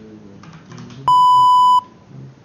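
A single electronic beep: one steady, loud 1 kHz tone lasting just under a second and starting and stopping abruptly.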